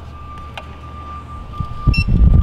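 A card held to a sample kiosk's scanner: a steady high electronic tone over a low hum, then a short electronic beep near the end. A loud thump of handling comes just before the beep.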